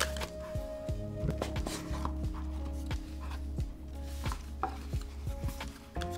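Paperboard earbud packaging being handled and opened: scattered light taps, clicks and soft rubbing as the box parts and inner tray are slid apart.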